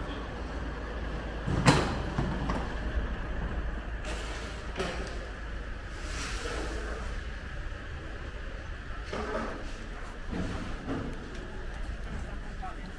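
Street ambience with a steady low rumble, broken by one sharp knock or clack about two seconds in and a few softer knocks later.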